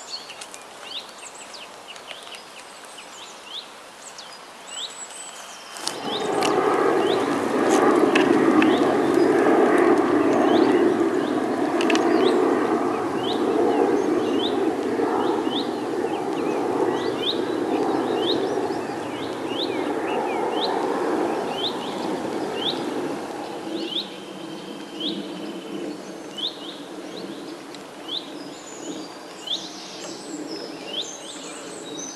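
Songbird chirping in short repeated notes, about one a second. About six seconds in, a louder steady rushing noise starts abruptly and eases off after about 23 seconds.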